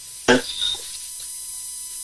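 A pause on a phone call: a caller's brief hesitant syllable about a third of a second in, then a faint line hiss with a thin steady tone.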